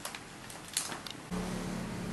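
Handling noise of paper and camera: a few light clicks and rustles, then about a second and a half in a steady low hum like a running motor starts suddenly and holds.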